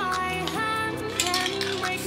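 Background music: a gliding melody over held bass notes.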